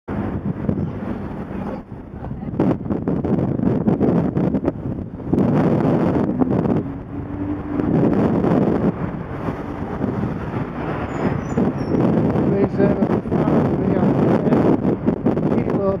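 Road traffic heard from a moving bicycle: car engines and tyres passing close by, including a car overtaking the cyclist very close, over a steady rumble of wind on the camera's microphone.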